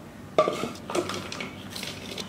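Kitchen clatter of a plastic mixing bowl, takeaway salad containers and utensils handled on a countertop: a few separate knocks and clinks, the sharpest about half a second in.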